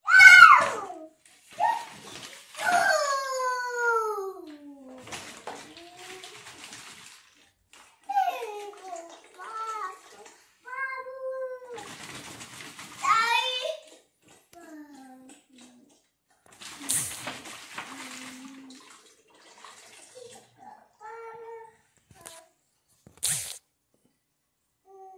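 Young children's wordless cries and exclamations, many gliding downward in pitch, the loudest right at the start, over water swishing and draining between two joined 2-liter bottles of a tornado-bottle toy.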